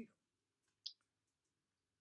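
Near silence with a single short, faint click just under a second in, followed by a tiny tick.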